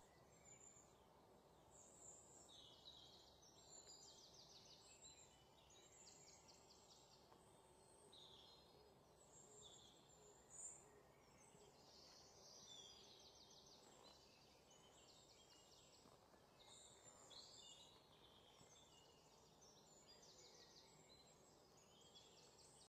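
Near silence, with faint, high-pitched bird chirps and short trills repeating throughout.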